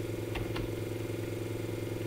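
A steady low, buzzy hum with a fixed pitch, and two faint clicks close together shortly after it begins.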